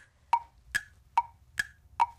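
A wood-block tick-tock cue: short, evenly spaced ticks, about two and a half a second, alternating between a lower and a higher note. It marks thinking time while viewers pick their answer.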